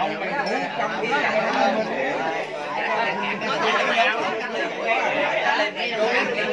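A group of people talking at once around a table: overlapping conversation with no single clear speaker.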